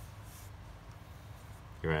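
Pen writing on paper, a faint scratching of the nib, with a man's voice starting near the end.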